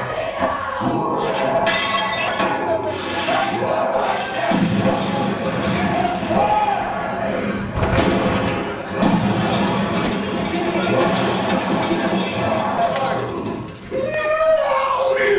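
Staged show effects in a large hall: crashing and breaking noises with a few sharp thuds, mixed with music and raised voices as smoke fills the stage.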